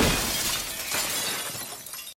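Glass shattering in a sudden crash, with the shards' noise fading away and a second, smaller crash about a second in.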